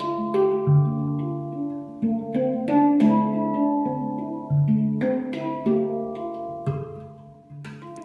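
Steel handpan played with the fingers: single notes struck one after another, each ringing on with a long sustain so that the tones overlap, with a deeper, louder note now and then. The playing dies away a little near the end.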